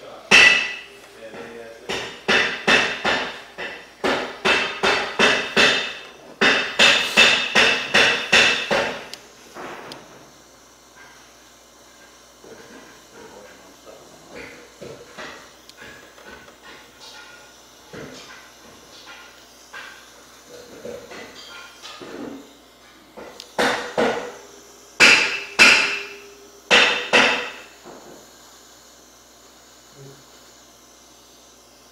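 Two runs of sharp, rapid clicks or taps, about three a second: the first lasts several seconds from the start, the second comes near the end. Faint scattered handling noise lies between them.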